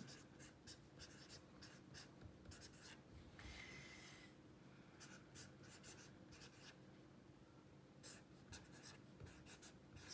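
A pen writing on lined notebook paper, faint quick scratches of short strokes as numbers and symbols are written, with one longer stroke about three and a half seconds in.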